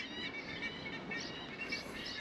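Faint, short, high chirps of distant birds over a low, steady outdoor background.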